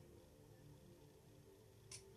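Near silence with a faint steady hum. Near the end comes one short, sharp breath out through the nose, part of a yogic breathing exercise.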